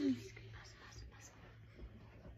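A girl's spoken phrase trails off at the very start, then near-quiet with a faint steady low hum and faint soft sounds.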